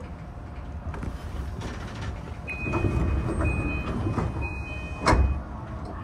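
A commuter train standing at a station platform: a steady rumble, then a high electronic tone held for about three seconds with short breaks, and a single loud knock about five seconds in.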